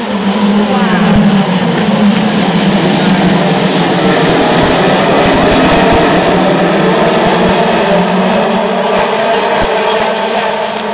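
A full field of Formula Renault 2.0 single-seaters, running 2.0-litre four-cylinder engines, accelerating away from a race start. Many engines at high revs overlap in one loud, dense sound, with pitch climbing in the first second or two, and it eases slightly near the end.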